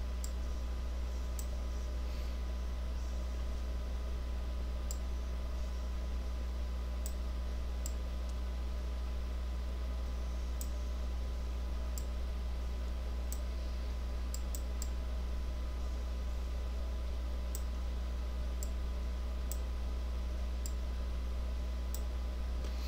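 Scattered sharp computer mouse clicks, irregular and roughly one every second or so, over a steady low electrical hum.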